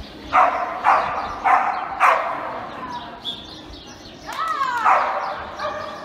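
Dog barking four times in quick succession, about two barks a second, then a higher rising-and-falling yelp a little past four seconds in.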